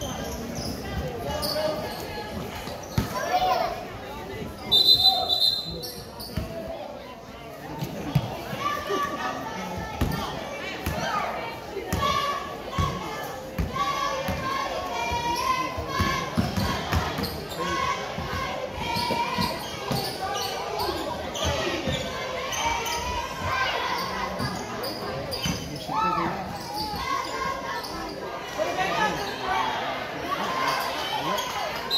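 Basketball dribbling and bouncing on a hardwood gym floor during play, with echoing voices of players and spectators. A short, high referee's whistle sounds about five seconds in.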